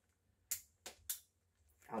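Child-resistant screw cap on an e-liquid base bottle clicking as it is pushed and twisted open: three short sharp clicks within about a second.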